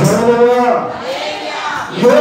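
A man's voice through a microphone and loudspeaker, holding a long wavering vowel that fades out near the end.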